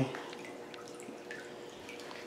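A few scattered water drips, fairly quiet, over a faint steady hum.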